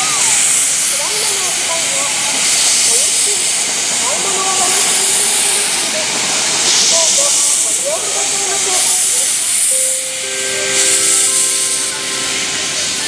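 C56 steam locomotive starting away slowly: loud steam hiss from its exhaust and open cylinder cocks swells about every two seconds with each beat. Voices can be heard faintly underneath, and near the end a steady note of several held tones begins.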